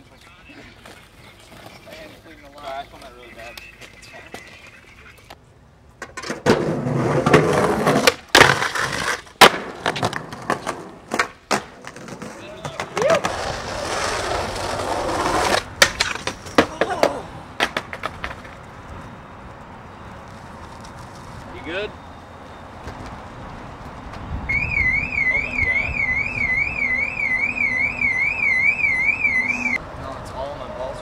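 Skateboard wheels rolling on concrete, with a run of sharp tail pops and landing slaps, loud from about six seconds in to about eighteen seconds in. Near the end a fast-warbling electronic alarm, like a car alarm, rises and falls about three to four times a second.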